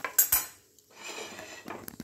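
Metal spatula knocking against a plate as a fried puri is set down on it: two sharp clinks right at the start, then quieter clatter and another click near the end.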